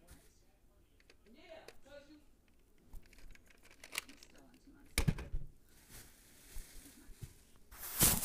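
A plastic toy gun being handled and loaded: scattered small clicks, a sharper clack about five seconds in, and a louder burst of rustling bedding near the end.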